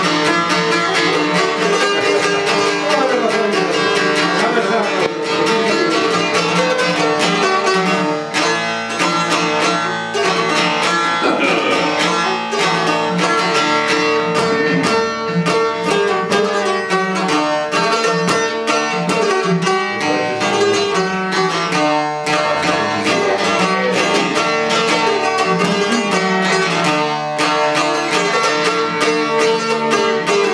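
Albanian folk duo of plucked long-necked lutes, a large sharki and a smaller çifteli, playing a continuous instrumental tune with quick repeated picking.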